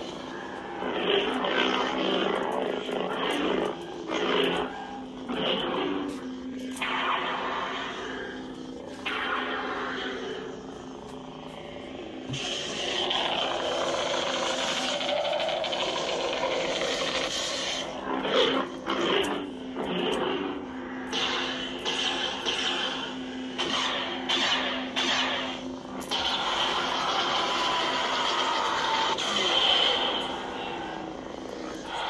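Proffie lightsaber sound board playing the Death in Darkness soundfont: a steady low hum under repeated rising and falling swing sounds as the blade is moved, with several short, sharp hits in between.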